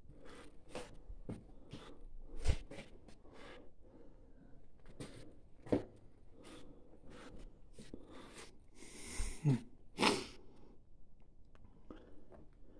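Footsteps crunching over grit and broken stone on a bunker's concrete floor, irregular steps at about one or two a second, a few of them sharper and louder.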